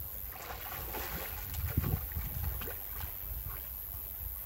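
A German shepherd wading in shallow creek water: a run of sloshing splashes, strongest a little under two seconds in, over wind rumble on the microphone.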